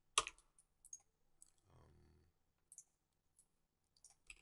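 Faint, sharp clicks of a computer mouse and keyboard, a handful spread out, the first the loudest. A soft low rustle in the middle.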